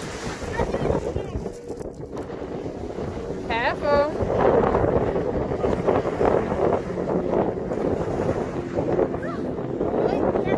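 Wind buffeting the microphone in gusts, heavier from about four seconds in, with a short high-pitched voice cry just before.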